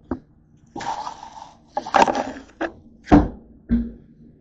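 Close handling noise: a light tap, two bursts of crinkly rustling, then two dull thumps in the last second as the camera is moved.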